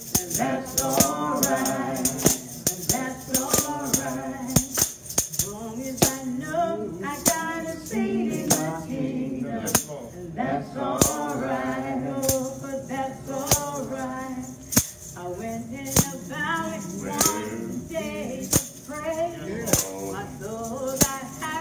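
A gospel song sung to a hand tambourine struck in a steady beat.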